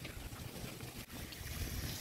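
Wind rumbling unevenly on the microphone over a steady hiss, with water from a fountain splashing faintly.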